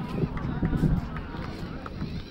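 Indistinct voices of people nearby over a low rumbling noise, loudest about half a second to a second in.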